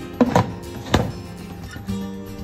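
Plastic lid being set onto a tea brewing pot: a few sharp knocks, the loudest about a second in, over background music.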